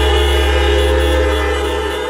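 Closing background music: a chord held steady with a deep low note beneath, starting to fade near the end.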